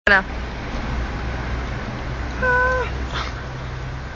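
A person's voice: a brief grunt right at the start, then a short held vocal tone that drops at its end about two and a half seconds in, over a steady low background rumble.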